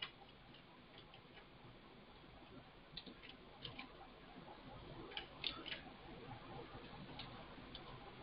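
Faint computer keyboard typing: scattered soft key clicks, sparse at first and more frequent in the second half, over low room hiss.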